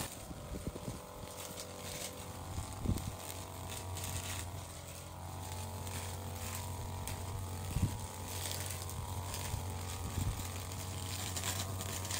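A string trimmer's small engine idling steadily, with a few faint knocks.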